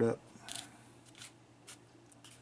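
Fingers scooping a sand and aquarium-gravel ballast mix over a glue-coated miniature base in a plastic tub: a few short, gritty scrapes about half a second apart.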